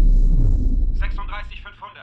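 A deep movie-trailer rumble, the tail of a boom, fading out over the first second and a half. About a second in, a man's voice starts calling over a radio, thin and narrow-sounding.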